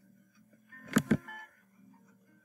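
A computer mouse clicking twice in quick succession, sharp and close, about a second in, over faint guitar music.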